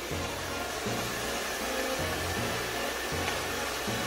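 Hair dryer blowing steadily, drying skin adhesive along the hairline, under background music with a changing bass line.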